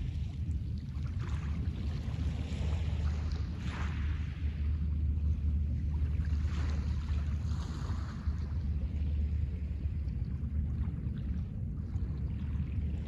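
Small waves washing onto a pebble beach, a soft hiss every couple of seconds, over a steady low rumble of wind on the microphone.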